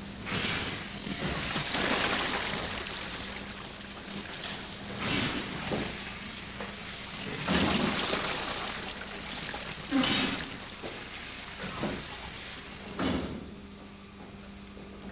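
Water from a Newcomen atmospheric engine's mine pump gushing out of a spout and splashing into a trough. It comes in repeated surges with each lift of the pump, and there are a few sharp knocks.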